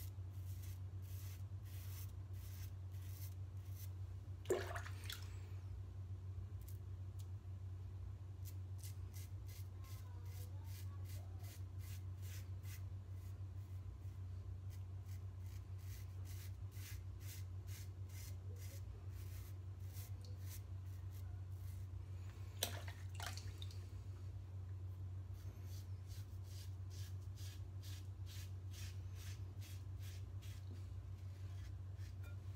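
Open-comb Mühle R41 double-edge safety razor scraping a few days' stubble off a lathered scalp against the grain, in quick short strokes of two or three a second. Two sharper knocks, one about four seconds in and one about three quarters of the way through, over a steady low hum.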